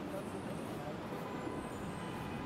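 City street ambience: a steady hum of traffic with faint, indistinct voices of passers-by.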